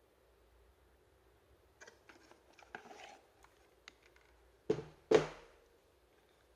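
Cardboard box and plastic cordless-tool battery packs being handled: soft rustling and light clicks, then two sharp knocks about half a second apart as the packs are set down on the workbench.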